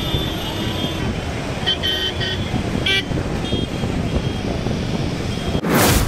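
Road traffic of cars and motorbikes driving past, with short car-horn toots about two seconds in and again near three seconds, and voices. Near the end a loud whoosh cuts in.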